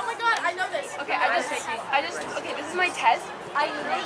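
Several people's voices talking and calling over one another, indistinct chatter with no clear words.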